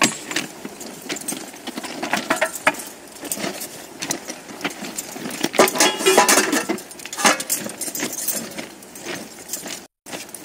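Thermite rail-weld preheating burners hissing steadily. Over the hiss come repeated metallic clinks and rattles of tools and gear being handled on the track, busiest around the middle.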